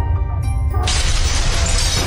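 Intro music with a heavy bass beat, then a glass-shattering sound effect that crashes in a little under a second in and runs on over the music.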